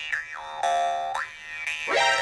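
Cartoon-style comic sound effect: a pitched tone slides down, holds steady for about half a second, then slides back up, like a boing or slide whistle.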